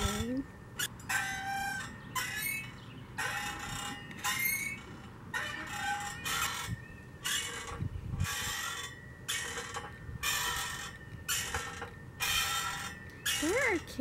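Rhythmic metallic squeaking, about two short squeaks a second and steady throughout, typical of moving park or playground equipment such as a swing.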